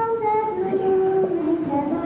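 A young girl singing, holding long notes that step down in pitch.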